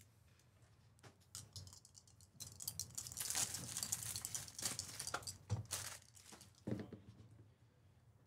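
Crinkling and tearing of wrapping, dense and crackly for about three and a half seconds starting a little past two seconds in, with a couple of short soft knocks near the end.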